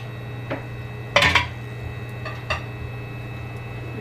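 Kitchenware clinking and knocking: a sharp clatter about a second in, with a few lighter knocks before and after it, over a steady low hum.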